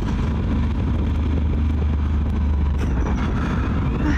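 Motorcycle engine running steadily at low speed, with wind and road noise, heard from the rider's own bike.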